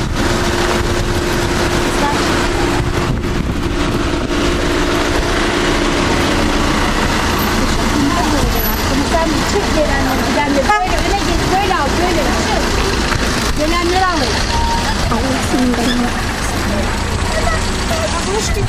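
Voices of an outdoor crowd over a steady low rumble. A steady droning tone sounds for the first six seconds or so, and the voices are most prominent in the middle of the stretch.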